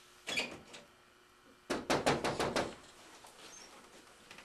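Knocking on a door: a short cluster of about three raps, then a quicker run of about seven raps about two seconds in.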